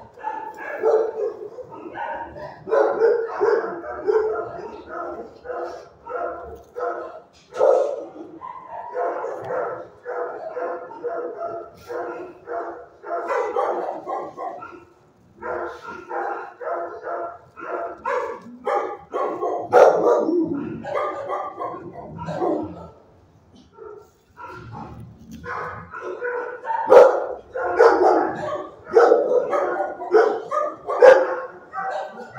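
Dogs in shelter kennels barking over one another almost without a break, with a short lull about three-quarters of the way through.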